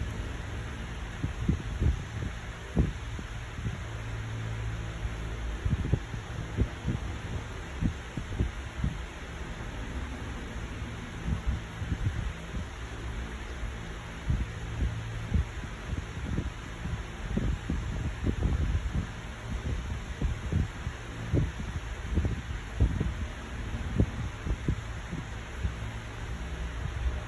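Soft irregular low thumps and rubbing from a phone microphone being handled, over a steady low hum in the room.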